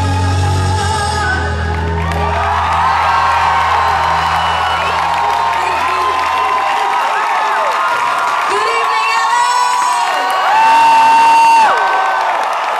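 Concert audience cheering and whooping as a live band's final held chord rings out, its low bass note stopping about seven seconds in. Near the end, one loud, long whistle rises above the crowd.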